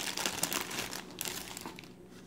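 Thin clear plastic bag crinkling as a small device is slid out of it by hand: a dense, crackling rustle that fades away over the second half.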